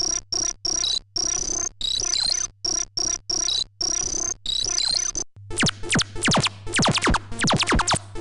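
Radio Active Atomic Effects Synth, a freeware monophonic subtractive VST synth, playing its 'Classic Runner' preset: a high electronic tone chopped into stuttering rhythmic bursts that jump down and back up in pitch. About five seconds in it switches to the 'Blippin Crazy' preset, a run of rapid falling blips, several a second.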